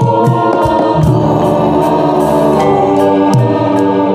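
Javanese gamelan music accompanying a kuda kepang horse dance: voices singing together over sustained instrument tones, with drum strokes cutting through.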